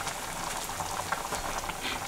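A brown liquid mixture boiling in a metal cooking pot over a smoky fire: steady bubbling with many small scattered pops.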